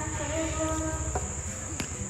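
Crickets chirring in a continuous high-pitched band at dusk, with a faint background murmur and a couple of light clicks.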